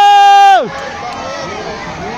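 A person's long, loud yell of alarm, held on one pitch and then dropping off and stopping about half a second in, followed by the quieter mingled voices of a crowd of onlookers.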